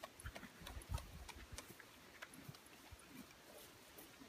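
Faint scattered clicks and soft thumps of a pug and horses shifting about on grass at a pasture gate, with one louder thump about a second in.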